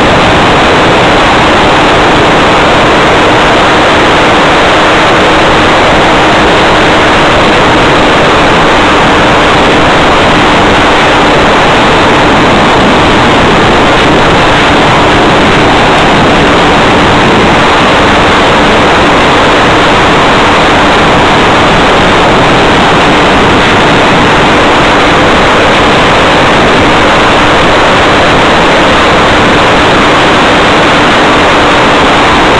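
Loud steady hiss with a faint steady hum underneath, unchanged throughout, as carried on the audio of the RC plane's analog FPV video feed.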